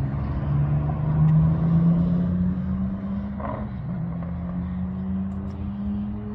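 A motor vehicle's engine running steadily nearby, its hum slowly rising in pitch, with a short dip about two-thirds of the way through.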